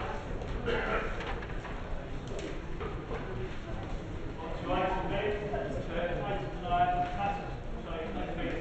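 Speech only: a voice talking in a large hall, clearest from about halfway through to near the end, over a steady low hum.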